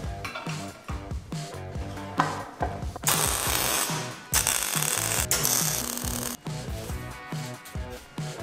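Electric arc welding on steel plate, a dense crackle in three short runs from about three seconds in to about six and a half, over background music with a steady beat.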